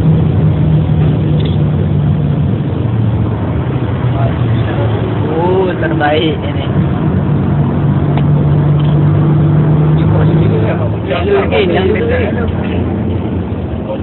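Steady low engine drone and road noise heard from inside a moving bus, with a faint talking voice at about five and again at about eleven seconds in.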